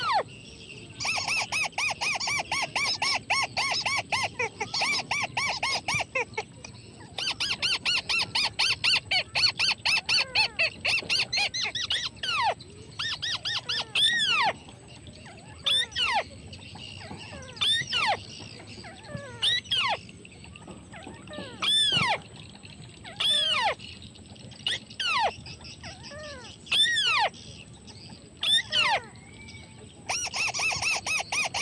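White-browed crake calls: two long bouts of rapid chattering, about ten notes a second, then single rising-and-falling notes every second or two.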